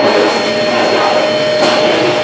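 Live rock band playing loud, with distorted guitar and bass and drums making a dense wall of noise. One steady note is held through it, and cymbal crashes sound at the start and near the end.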